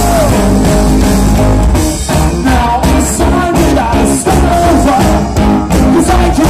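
Live rock band playing: electric guitar and drum kit under a sung vocal line.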